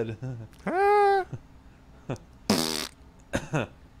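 Men's vocal reactions to a joke: a held vocal tone that rises and then levels off about a second in, then short bursts of laughter.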